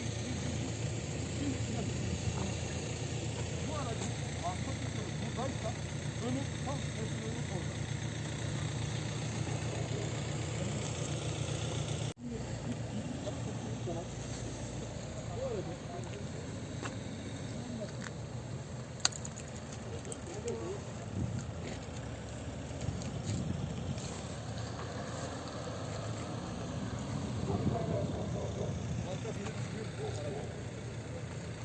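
A vehicle engine idling steadily, with indistinct voices of people talking over it. The sound drops out for a moment about twelve seconds in.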